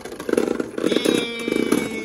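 Two Beyblade Burst spinning tops rattling and scraping together on the plastic stadium floor as they spin down. A steady ringing whine joins the fast rattle about a second in. Both tops lose spin at the same time, ending the battle in a draw.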